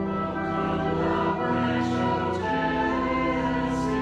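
Voices singing a hymn together with organ accompaniment, in long held notes that change every second or so, with short breaths between phrases.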